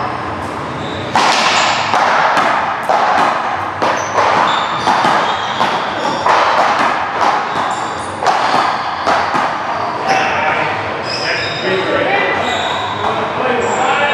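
A doubles rally on a one-wall court: a ball smacked against the wall and off the floor again and again, a sharp crack every half second to a second, echoing in a large hall.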